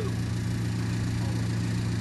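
JCB telehandler's diesel engine running steadily, a low even hum with no revving.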